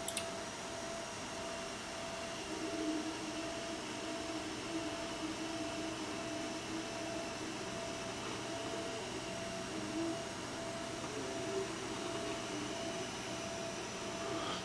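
Kokoni EC1 mini 3D printer running at the start of a print: a steady hum with one constant tone, joined about two and a half seconds in by a wavering stepper-motor whine as the print head moves along its belt-driven gantry.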